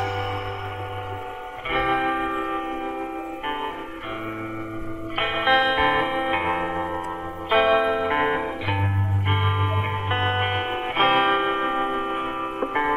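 Instrumental background music with plucked-string, guitar-like chords over a low bass note. The chords change every one to two seconds.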